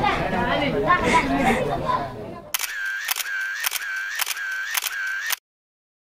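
Voices for the first couple of seconds, then a run of camera-shutter clicks, about two a second with a ringing tone between them, lasting about three seconds and cutting off suddenly into silence.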